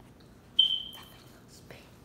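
A dog's single short, high-pitched whine, starting about half a second in and fading over about half a second.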